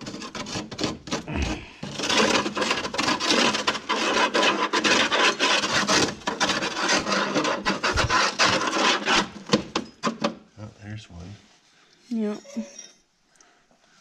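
Screwdriver scraping caked mud off the inner fender of a UTV: a dense, gritty rasp full of small clicks. It stops about ten seconds in.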